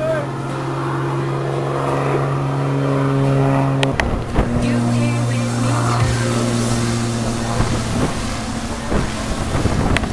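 Propeller aerobatic plane's engine droning steadily overhead; about four seconds in the sound breaks off and resumes at a slightly lower pitch.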